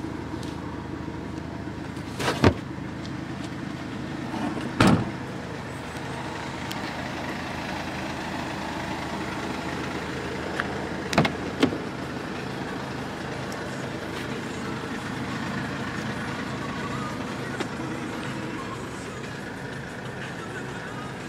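A 2010 Mercedes-Benz C200 CDi's four-cylinder diesel engine idling steadily, with a few sharp knocks and thumps from the car's boot and doors being handled: one about two seconds in, a heavier one about five seconds in, and two close together after about eleven seconds.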